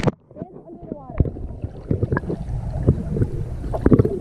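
Muffled underwater sound of a swimming pool, picked up by a camera held under the surface: the sound drops away as it goes under, then low water rumble with scattered knocks and bubbling as a child moves about underwater.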